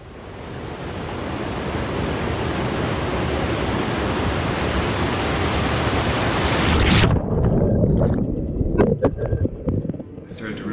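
Rushing white water of a rocky creek rapids, swelling over the first few seconds. About seven seconds in the sound turns suddenly muffled and low as the action camera is pulled under the water, with a few dull knocks.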